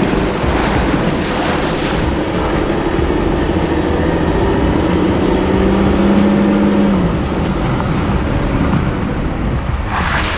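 Background music playing over the steady rumble of a Volkswagen Atlas SUV driving along a dirt trail.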